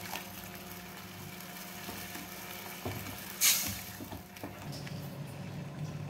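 Water pouring into a steel kadai of thick curry gravy, splashing and filling, with small knocks of the pan and spatula. A brief sharp noise stands out about three and a half seconds in.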